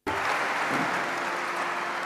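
Audience applause that starts abruptly and holds steady, with a faint held instrument note beneath it: the opening of a live ghazal recording.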